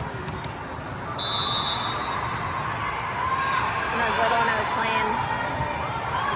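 A referee's whistle gives one short, steady, high blast about a second in, over crowd chatter and the thuds of volleyballs on the courts.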